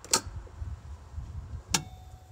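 Two sharp clicks about a second and a half apart, a small switch on the camper's wall panel being worked by hand; the second click rings briefly. A low uneven rumble runs underneath.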